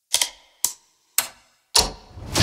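Four sharp clicks about half a second apart, each cut short, the last one heavier with a deeper thud.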